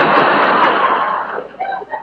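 Live studio audience laughing, dying away about a second and a half in.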